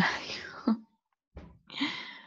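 Speech only: a voice talking softly, partly whispered, breaking off for about half a second near the middle.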